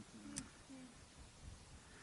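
Near silence, with faint distant voices talking in about the first second and a single small click.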